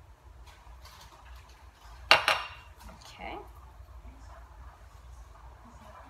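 A glass seasoning shaker with a metal cap clinking against the countertop: one sharp clink with a brief ring about two seconds in, followed by a smaller knock about a second later and faint light ticks.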